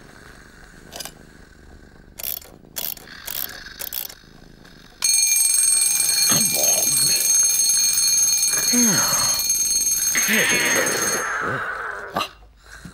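Twin-bell alarm clock ringing loudly. It starts suddenly about five seconds in, after a few faint clicks, runs steadily and cuts off abruptly about a second before the end.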